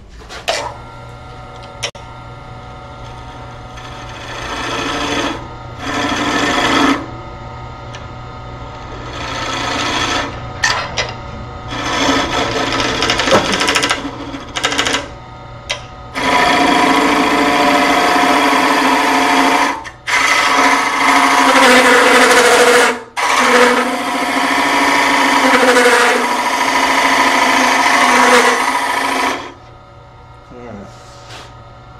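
A gouge cutting into a wooden block spinning on a wood lathe, hollowing out a hole. Under a steady lathe hum, short cutting passes come and go over the first half, then give way to longer, louder passes from about halfway through. These stop shortly before the end.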